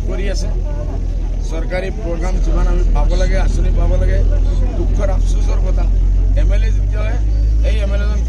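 A man speaking into press microphones, over a heavy low rumble that swells in the middle.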